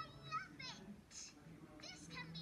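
Cartoon character speech in high-pitched voices, played through a laptop's speakers and picked up by a phone.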